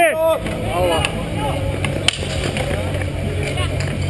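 Outdoor street hockey game: a steady low rumble under a few brief voices, with one sharp knock about two seconds in.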